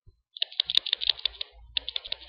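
Rapid, irregular clicking of computer keys or buttons, starting about a third of a second in.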